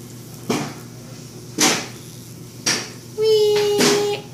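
A few short knocks or rustles about a second apart, then a steady hummed note from a child's voice near the end.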